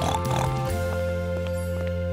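A cartoon pig gives a short oink at the start, over background music that then settles into a steady held chord.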